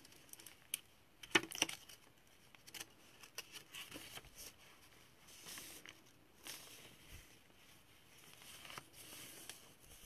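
Paper pages of a handmade junk journal being turned and handled: soft, scattered rustles and crinkles, the loudest about a second and a half in.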